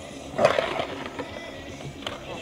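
Skateboard rolling on a concrete bowl, with a loud, sharp hit about half a second in that fades quickly, then quieter wheel roll.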